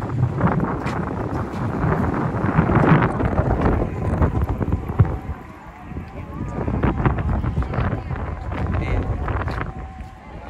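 Wind buffeting the microphone on an exposed hilltop: a loud, gusty low rumble that eases for about a second midway, with people's voices in the background.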